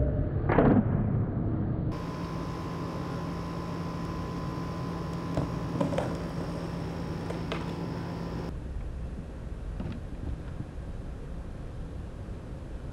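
Skateboard on concrete: a loud clack of the board about half a second in, then a few sharp clicks of the tail and wheels later on. A steady electrical hum runs under them.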